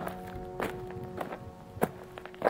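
A plastic toy figure's feet tapping on a tabletop as it is hopped along, a light tap about every half second. A faint held chord of music sounds under the taps.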